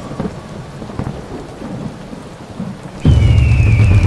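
Steady rain, then a sudden loud thunderclap about three seconds in that rumbles on, with a high tone gliding down over it.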